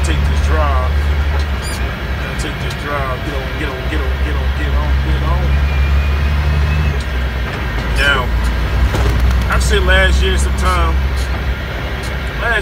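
Truck engine running on the road, heard as a low steady drone inside the cab, its pitch shifting a few times.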